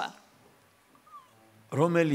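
A pause in speech filled with quiet room tone, then a man's voice starts a drawn-out word about two-thirds of the way through, its pitch arching up and then falling.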